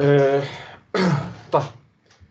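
Speech only: a man's voice making two short utterances, the second the Arabic word 'ṭayyib' ('okay').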